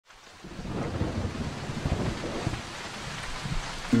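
Thunderstorm sound effect: steady rain with rumbling thunder, fading in over the first half second. Music comes in just before the end.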